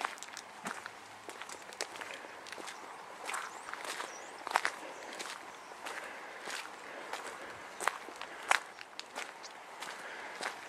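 Footsteps walking steadily on a loose gravel track bed, each step a short sharp crunch, about one a second.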